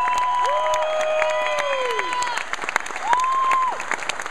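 Audience applauding and cheering, with two long, high held 'woo' calls over the clapping.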